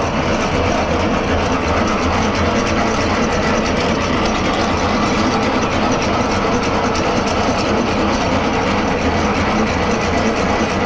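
Semi-trailer landing gear being hand-cranked, its crank gearbox rattling steadily and evenly over a low hum.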